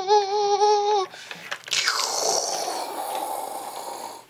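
A child making vocal sound effects for toy play: a held, slightly wavering note for about a second, then after a brief pause a long breathy hiss that slowly fades.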